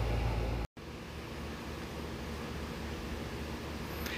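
Steady outdoor background noise with no distinct event: a heavy low rumble that breaks off at an edit under a second in, then a quieter even hiss with a faint low hum.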